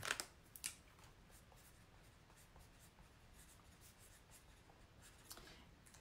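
Near silence with faint handling sounds: a couple of soft clicks near the start, then faint scratching of a marker writing on the backing sheet of a silk-screen transfer.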